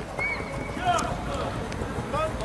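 Voices shouting across an open football pitch, one call held briefly near the start, with a few short thuds.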